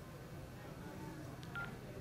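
Mobile phone held to the ear giving a short, faint electronic beep about one and a half seconds in, the tone of a call that the other side has just ended, over a quiet room.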